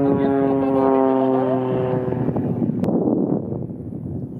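Extra 300L aerobatic plane's six-cylinder Lycoming engine and propeller droning at a steady pitch as it flies, heard from the ground. About two seconds in the steady tone fades away, leaving a rougher, fainter rumble.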